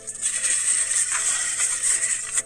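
A steady crunching, rustling noise of about two seconds while a crispy cheese-crusted taco shell is being eaten and handled.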